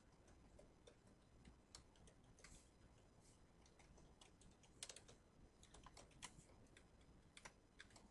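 Faint computer keyboard typing: irregular single keystrokes with a quick flurry about five seconds in.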